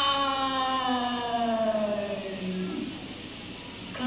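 A recorded vocalist holding one long sung note that slides slowly down in pitch and fades out about three seconds in.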